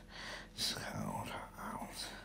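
A man speaking softly, partly in a whisper, in short broken phrases that the words cannot be made out from.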